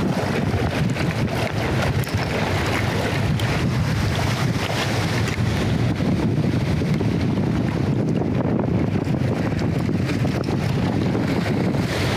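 Steady wind buffeting the microphone, heavy and rumbling in the low end, with waves washing against the rocky shore underneath.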